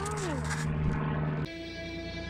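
A short falling vocal sound over a steady low hum, then, about one and a half seconds in, an abrupt cut to sustained background music.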